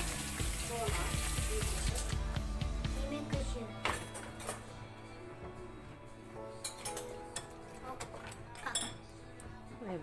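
Light background music with a few sharp clinks of metal cutlery as a spoon is fetched, over a low rumble in the first three seconds or so.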